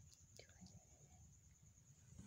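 Near silence with a faint steady high-pitched tone and one faint, brief falling sound about half a second in.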